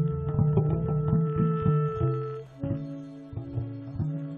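Improvised jazz: an electric bass plucks a run of low notes under long held tones. About two and a half seconds in, the held tones move to a new, lower pitch and the plucking thins out.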